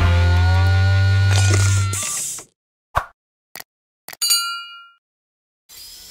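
Background music that fades out about two seconds in, then a few light clicks and a single metallic ding from a piece of metal, ringing for about half a second.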